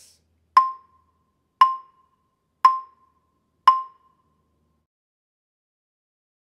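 Two yarn mallets playing four evenly spaced full strokes, about one a second, on the wooden bars of a keyboard percussion instrument. Each stroke is a short, clear note on the same pitch that rings briefly and dies away.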